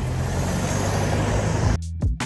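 Roadside fuel dispenser's pump humming steadily as petrol runs through the nozzle into a scooter's tank. It cuts off suddenly near the end, giving way to guitar music.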